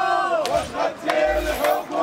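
A crowd of protesters shouting slogans together, with sharp hand claps among the voices.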